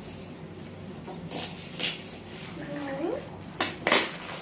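Gift wrapping paper rustling and tearing in short bursts as a wrapped box is opened, with two loud rips near the end. A brief rising vocal sound comes just before them.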